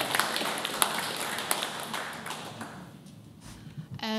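Audience clapping, thinning out and fading away about three seconds in.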